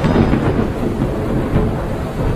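A loud, long rumble of thunder, a dramatic sound effect with a deep low end.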